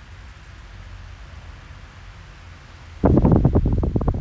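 Oscillating SMC table fan running, heard as a low steady rumble of its air. About three seconds in, as the head swings round to face the microphone, its breeze hits the microphone and sets off loud, rapid wind buffeting.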